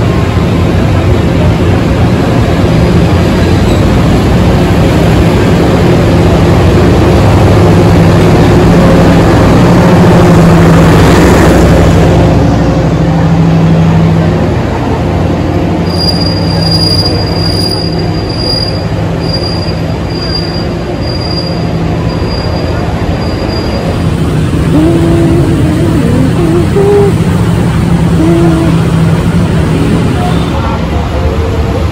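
Passenger train coaches rolling slowly past along a station platform, a steady rumble that is loudest about a third of the way in and then eases as the train slows. In the second half a thin, high squeal from the wheels comes and goes for several seconds as it comes to a stop.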